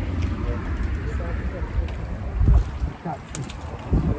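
Wind buffeting the microphone, a low rumble that eases off about three seconds in, with a dull thump shortly before and another at the end.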